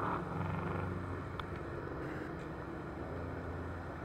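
Steady low hum of a vehicle engine running, with street noise.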